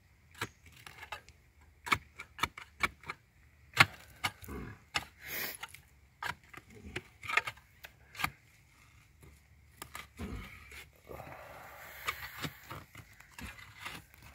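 Hand digging in dump fill around a buried jug: irregular sharp clicks, knocks and scrapes as a hand tool and gloved hands work through dirt and debris.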